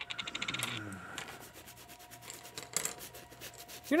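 Paintbrush bristles scrubbing across a stretched canvas in short, quick strokes, with a fast run of scratchy strokes early on and a shorter one about three seconds in.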